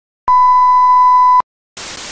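A single loud, steady electronic beep at one pitch, lasting just over a second. About three-quarters of a second after it stops, a short burst of static-like hiss begins near the end.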